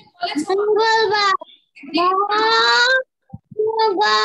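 A woman's voice reciting in a drawn-out sing-song, two long phrases with held vowels and a short pause between them.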